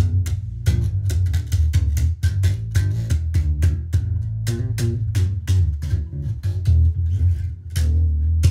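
Five-string electric bass guitar played in a fast, busy run of finger-plucked notes, many a second, each with a sharp string attack over a deep low end.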